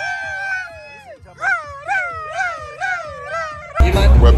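A high voice holds a long note, then wails in a quick up-and-down warble about twice a second. Near the end it cuts suddenly to loud club music with heavy bass.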